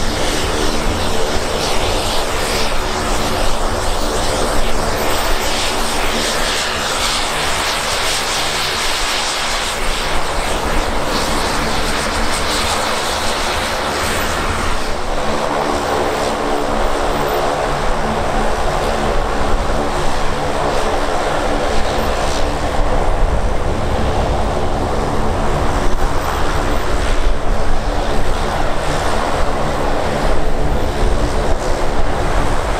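Fairchild SA-227AT Expediter's twin Garrett TPE331 turboprops running at taxi power: a steady drone with propeller whine. The sound grows fuller from about halfway through.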